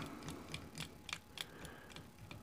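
A handful of faint, irregular light ticks from tying thread being wrapped around a fly hook with a bobbin.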